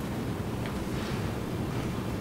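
Steady low rumbling background noise with no speech: the hum and hiss of the courtroom's room tone through the floor microphones.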